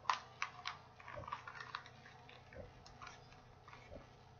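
Folded magazine paper and a clear plastic bag crinkling faintly as they are handled: a string of small sharp crackles, the loudest just as it begins, then softer ones scattered throughout.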